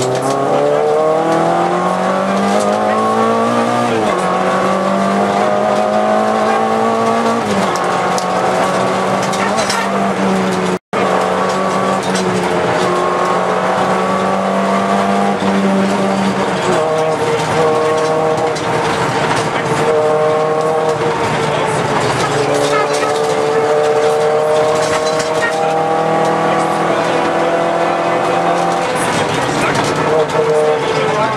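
VW Golf II GTI 16V's 1.8-litre sixteen-valve four-cylinder engine heard from inside the cabin, pulling through the gears: its pitch climbs, drops at a gear change about four seconds in and again a few seconds later, holds fairly steady, dips about halfway through and then climbs slowly again toward the end. The recording cuts out for an instant shortly before halfway.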